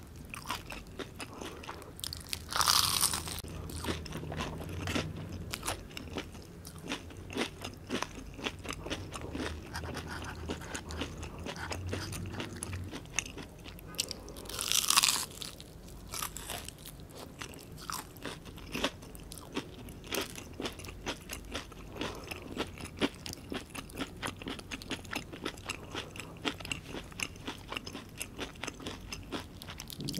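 Close-miked eating of crumb-coated mozzarella onion rings: two loud crunchy bites, about three seconds in and again about fifteen seconds in, each followed by steady crunchy chewing.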